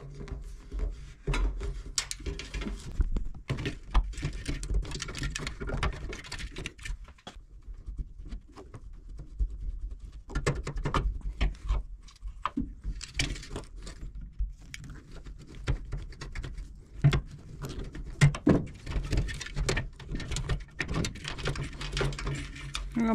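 Close handling noise of a small rubber overflow hose being worked onto the metal overflow nipple of a radiator filler neck, by hand and with needle-nose pliers. Irregular clicks, scrapes and rustling come in spells, with a couple of brief lulls.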